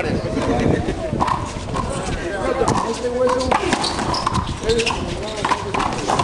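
People talking, with several sharp slaps of a big rubber handball striking the concrete court walls and floor.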